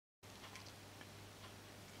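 Near silence: faint room tone with a steady low hum and a few faint ticks, starting a moment in after dead silence.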